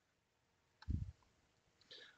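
Mostly quiet bench, with a few light clicks as oscilloscope probes and test gear are handled, and one short low thump about a second in.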